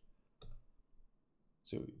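A single short, sharp computer mouse click about half a second in, clicking a download link, followed by a fainter tick about a second in.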